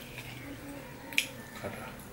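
Fingers working curry and food on a steel plate while eating by hand, with one sharp click a little past halfway and a fainter one shortly after.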